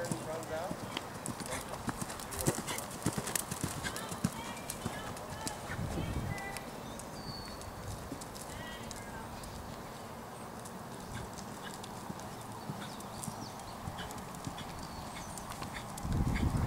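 Horse's hoofbeats on sand arena footing at the canter, a run of soft thuds and clicks that is clearest in the first six seconds and fainter after.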